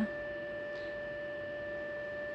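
A steady whine of several constant pitches held together, with no change, over faint room noise.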